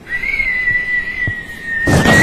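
A person whistling one long, steady note that sinks slightly in pitch, ending in a loud, breathy blow of air near the end.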